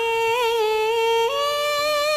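A female singer holding one long sung note through the stage PA, with a slight wobble in the middle, stepping up to a higher note a little after a second in.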